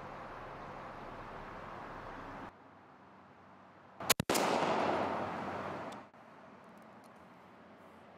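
A single shot from a Winchester SXP 20-gauge pump shotgun firing a Winchester Long Beard XR turkey load, about four seconds in, followed by its echo dying away over about two seconds.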